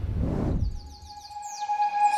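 The tail of a whooshing intro sound effect dies away in the first half-second. Then come a run of quick, high falling chirps over a soft held tone, leading into the opening of the background music.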